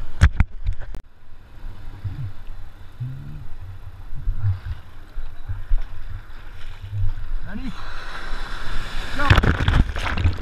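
Ocean whitewash sloshing and gurgling around an action camera at water level in the surf, with a few sharp splashes against the housing at the start. Near the end a breaking wave's whitewash rushes over the camera, the loudest part.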